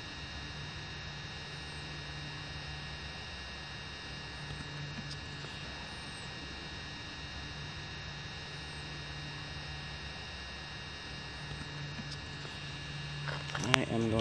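Quiet, steady background hiss and low hum with a few faint, steady high-pitched tones; a man's voice starts just before the end.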